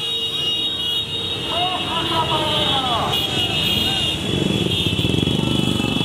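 Many motorcycles running past in a dense procession, their engine noise growing louder from about four seconds in. Shouting voices rise and fall over them, with a steady high-pitched tone throughout.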